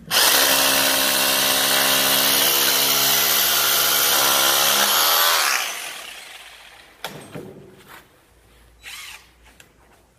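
Corded Stanley drill boring a 6.5 mm hole into a concrete ceiling for a screw anchor. It runs steadily for about five seconds, then winds down with falling pitch as it is released, followed by a couple of faint knocks.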